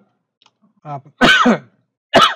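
A man clears his throat once, loudly, just over a second in, a short burst with a falling voiced tone.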